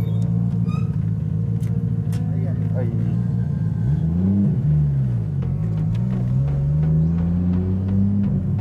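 Nissan Skyline GT-R (R33) RB26 twin-turbo straight-six heard from inside the cabin as the car pulls away. The revs rise and drop about four seconds in, as at a gear change, then climb steadily under acceleration.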